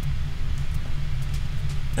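A steady low rumble, with nothing higher-pitched above it.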